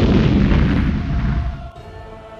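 Cinematic asteroid-impact explosion effect: a huge blast rolling into a deep rumble that fades away over about a second and a half, with background music underneath.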